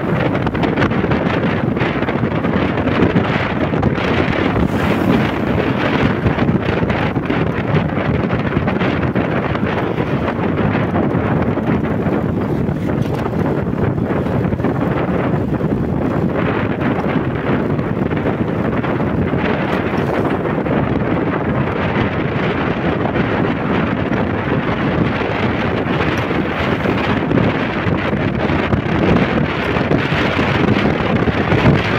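Steady, loud wind noise buffeting the microphone of a camera on a moving motor scooter, with the rush of riding at road speed.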